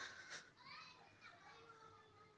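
Near silence in a pause of chanting, with only faint, distant voices in the background.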